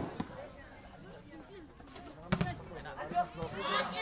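A single sharp slap of a volleyball struck by hand, about two seconds in, then the voices of players and spectators.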